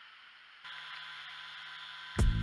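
Faint steady background hiss with no distinct sound event. About a third of the way in it steps up slightly and a faint steady hum joins it.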